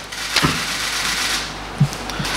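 Loose sheets of paper rustling as they are lifted and turned over, beginning with a sharp crackle about half a second in, with a short low bump near the end.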